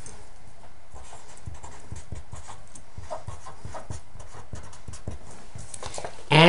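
A pen writing a word on an index card on a desk: a string of short, uneven taps and light scratchy strokes.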